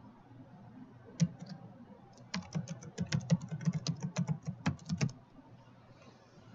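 Typing on a computer keyboard: a few single taps about a second in, then a quick run of keystrokes for nearly three seconds as the name 'Private Network' is typed in.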